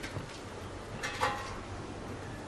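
Felt-tip marker writing on a whiteboard, soft strokes with a short squeak about a second in, over faint room hum.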